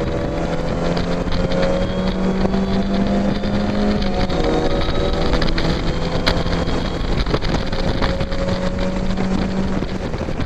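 Mazda MX-5's four-cylinder engine under hard acceleration, heard from the open cockpit: the note climbs steadily, drops at a gear change about four seconds in, then climbs again through the next gear.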